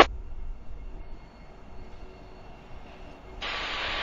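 Low, steady rumble of a diesel locomotive moving slowly through a rail yard. A radio squelch clicks shut at the start, and a radio's hiss switches on abruptly about three and a half seconds in, just before a transmission.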